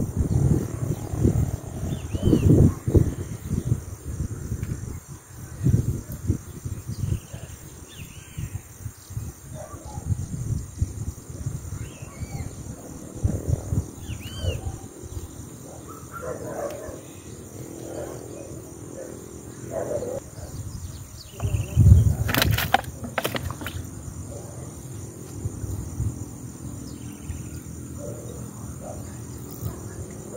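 Outdoor ambience: an uneven low rumble on the microphone, strongest at the start, with short bird chirps now and then. A sharp thump and clatter, the loudest moment, comes a little after twenty seconds in.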